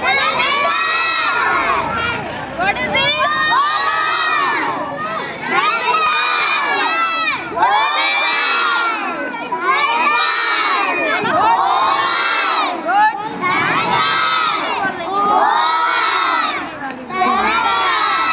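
A group of young children shouting together in unison, calling out shape names, one loud call roughly every two seconds.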